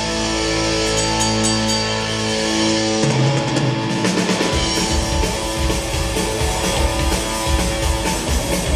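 Live rock band playing, with electric guitar, drums, bass and keyboards. A chord is held for about three seconds, the music changes, and the drums and bass come back in with a steady beat about four and a half seconds in.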